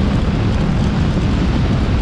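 Steady, loud wind and road noise from a vehicle in motion, with wind buffeting the microphone.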